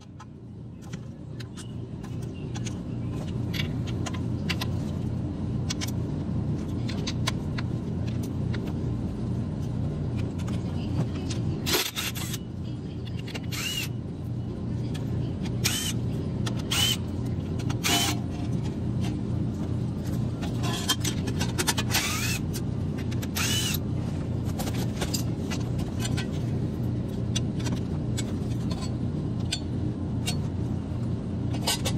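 A steady low drone fades in over the first few seconds and holds throughout. Over it come sharp metallic clinks and ticks, several of them ringing, between about 12 and 24 seconds in: a ratchet and loosened bolts on the plate under the crankshaft being unbolted.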